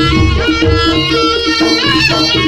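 East Javanese jaranan gamelan accompaniment: a slompret (shawm) plays a sustained, sliding melody over kendang drums and steady gong-chime tones.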